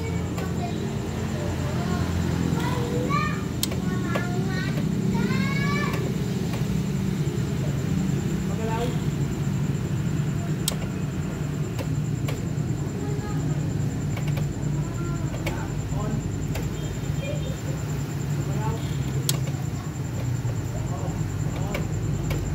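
A Honda Fit engine idling with a steady low hum, with children's voices and calls in the background.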